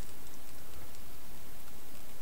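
Steady background hiss with no distinct handling sounds or clicks.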